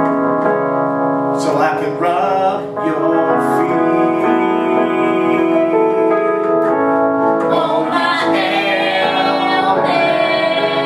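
Electric keyboard accompaniment with a woman singing sustained notes.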